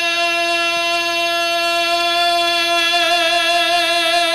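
A male singer holding one long sung note of a Punjabi Sufi kalam, its pitch steady, with a slight vibrato coming in near the end.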